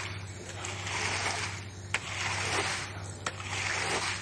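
Rubber floor squeegee pushing standing rainwater across a flat concrete roof slab: the water swishes and splashes in repeated strokes, each one swelling and fading. A sharp knock comes about two seconds in.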